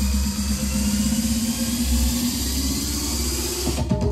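Electronic dance music played loud through Sony MHC mini hi-fi systems, with deep bass and a rising sweep that builds up. It breaks into a new beat near the end.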